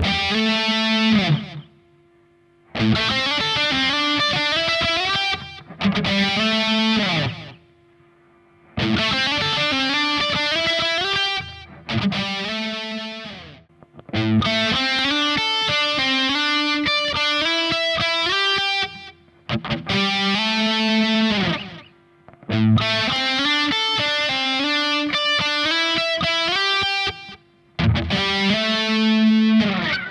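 Distorted Stratocaster-style electric guitar playing an A minor pentatonic lick in octaves, with slides up the neck. It is played as short phrases of a few seconds each, with brief silent gaps between them.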